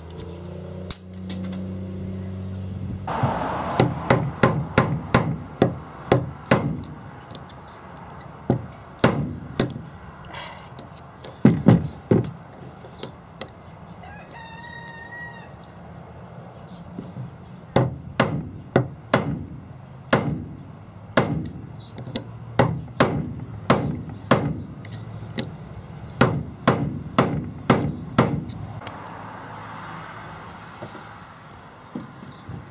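Hammer striking a steel pin punch in bursts of quick, sharp blows, driving the pin out of a Dodge NV4500 shifter stub, with a pause in the middle. A rooster crows once during the pause.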